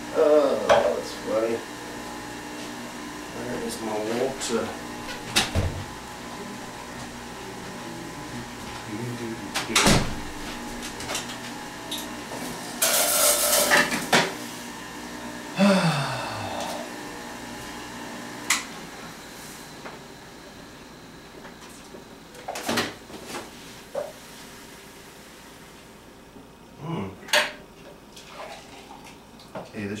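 Knocks, clunks and clatter from handling a stainless-steel centrifugal juicer and its parts, with a brief scraping rush about halfway. A faint steady low hum underneath fades away over the second half.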